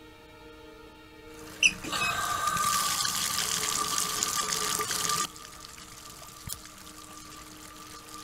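Cross-head bath tap turned on with a brief sharp sound, then water running hard from the tap into the bath for about three seconds before it cuts off suddenly. A faint low drone of film score sits underneath.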